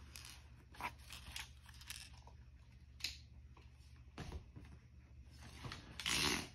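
Faint handling noises: a scatter of soft clicks and rustles, roughly one a second, from small plastic fidget toys and a cardboard blind box being handled, over a low steady room hum.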